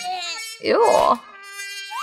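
A short disgusted exclamation, then a steady buzzing, insect-like sound effect with a quick upward glide near the end.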